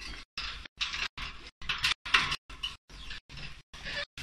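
Pet budgerigars chirping and chattering in their wire cage. The sound is high-pitched and broken up by regular dropouts about four times a second.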